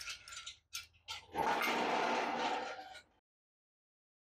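Engine hoist chain and hook being worked free of an engine block on an engine stand: a few light metal clinks, then a second or so of rattling, scraping metal that cuts off suddenly.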